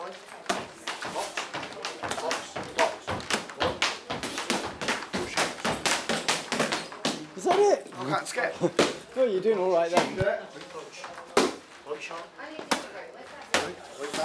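Boxing gloves striking focus mitts: a rapid run of sharp slaps, several a second, as punches land on the pads, with a voice partway through.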